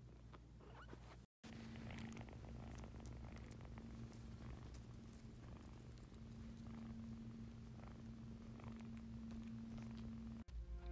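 Seven-week-old kitten purring close to the microphone, a faint steady low rumble that comes in after a brief dropout about a second in, with light rustles of it moving against the phone.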